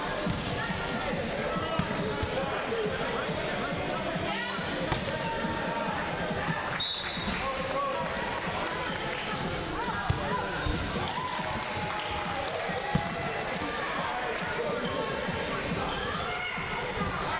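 Echoing gym din of an indoor volleyball game: the ball being struck and bouncing on the court, with players' voices calling out throughout. A few sharp hits stand out above the babble.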